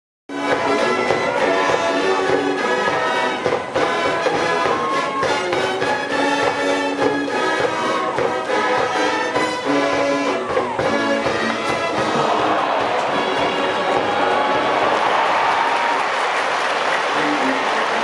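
Brass band cheering music with trumpets and trombones. About twelve seconds in, crowd cheers and applause swell and largely cover the band as the ball is hit into the outfield.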